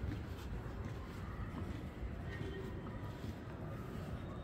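Outdoor background noise: a steady low rumble, with a few faint, indistinct sounds over it.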